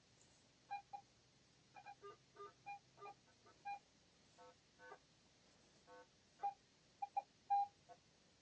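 Metal detector giving short target beeps as it is swept over the grass: a quick, irregular string of brief tones in two or three different pitches, some low and some higher.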